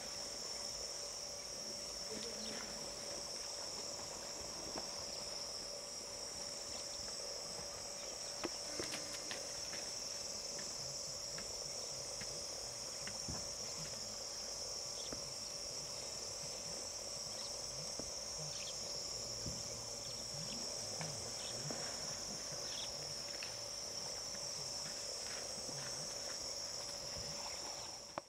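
Steady chorus of insects: a continuous high-pitched drone that swells and eases slightly, over a fainter steady lower tone. A few faint clicks and rustles come about a third of the way in.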